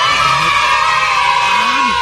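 A group of children cheering and whooping all together, a loud held 'wow'-like shout that starts suddenly, as an added sound effect.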